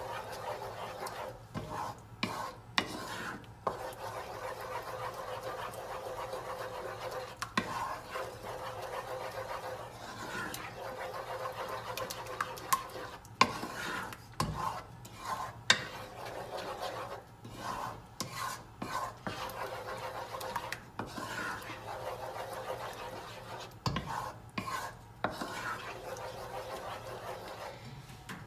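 A wooden spoon stirring thick cheese sauce in a stainless steel saucepan, scraping and tapping irregularly against the pan, over a faint steady low hum.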